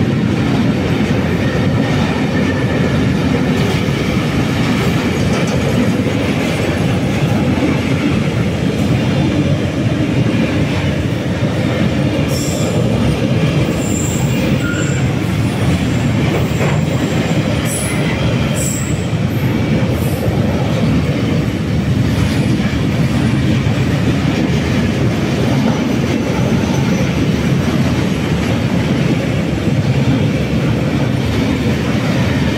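Intermodal freight train's container wagons rolling past close by at speed: a loud, steady rumble of steel wheels on the rails. There are a few short high-pitched wheel squeals in the middle.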